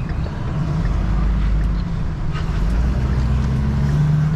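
Motorhome engine and road noise heard from inside the cab while driving, a steady low rumble that grows louder about half a second in as the vehicle pulls ahead.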